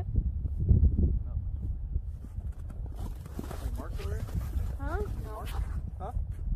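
Quiet, indistinct voices talking over a steady low rumble of wind on the microphone; the voices come mostly in the second half.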